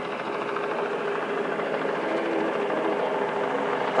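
Helicopter rotor heard at a distance: a steady, fast, rhythmic chopping drone that holds an even level throughout.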